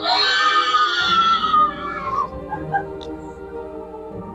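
A woman's long, high shriek that falls in pitch and fades about two seconds in, the startled cry of a prank victim, over steady background music.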